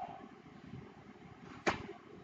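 Quiet room tone with a single short, sharp click near the end, a computer mouse button being clicked.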